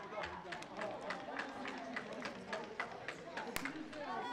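Boys' voices shouting across a football pitch over quick, even taps about three or four a second, with one sharp crack near the end.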